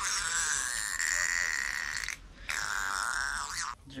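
A freshly caught char, held in the hands, barking: two long raspy grunts, the first about two seconds long and the second a little over one second.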